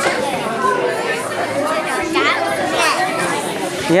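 Several children's voices chattering and calling over one another, with no break.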